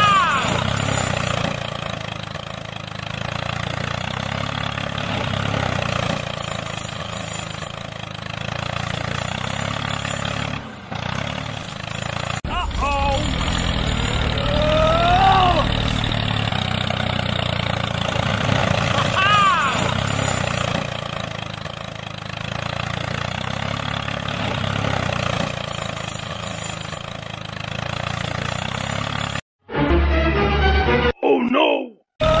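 Small electric gear motor of a homemade toy tractor running steadily as it drives through loose soil, towing a loaded trolley.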